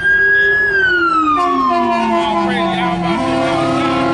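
An emergency vehicle's wailing siren on the road. Its tone holds high, falls steadily in pitch over about two seconds, then starts to climb again near the end, and a second, steadier tone joins about a second and a half in.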